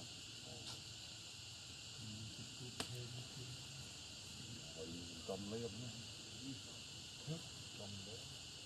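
Steady high-pitched chorus of insects buzzing, with faint voices now and then and a single sharp click a little before the middle.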